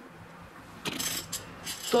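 Roasted coffee beans clicking and rattling on a ceramic plate as a hand moves through them, starting about a second in.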